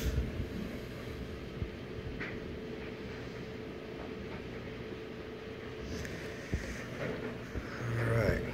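Low steady background rumble with a faint steady hum that stops about six and a half seconds in, and a few light knocks.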